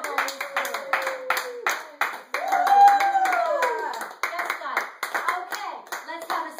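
Several people clapping hands in a steady rhythm while a woman's voice sings long, drawn-out wordless notes. The loudest note, in the middle, rises and then falls.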